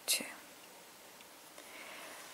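One word spoken softly at the start, then quiet room tone with no distinct sound.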